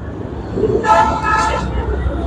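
A vehicle horn honks once, briefly, about a second in, over the steady low rumble of passing road traffic.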